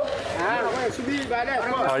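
People talking: voices in conversation, with no other sound standing out.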